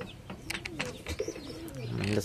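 Domestic pigeons cooing, a low call that rises and falls, with a few short clicks among it.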